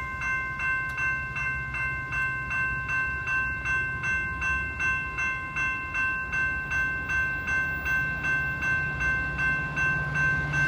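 Railroad grade-crossing warning bell ringing at an active crossing, an even rapid clanging of about three strikes a second. Under it is the low rumble of an approaching Metra commuter train, which grows louder near the end.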